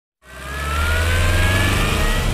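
News-intro sound effect: a rising whoosh with a deep rumble underneath, fading in just after the start and climbing slowly in pitch.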